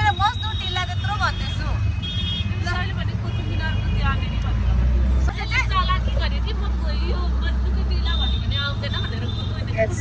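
Steady low rumble of road and traffic noise heard from inside a moving open rickshaw, growing deeper and louder for a few seconds from about halfway through.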